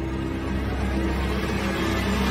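Sci-fi title-sequence sound effect of a spacecraft flying past. A rumbling whoosh slowly swells over a steady low drone and music.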